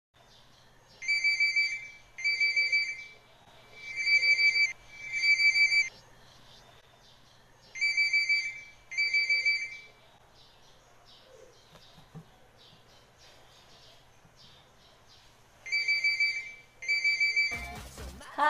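Electronic telephone ringing in a double-ring pattern: four pairs of short, high, steady rings. The first three pairs come about three seconds apart, and the last pair follows after a longer pause.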